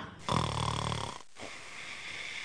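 A short raspy, snore-like throat sound lasting under a second, followed by a quieter steady hiss.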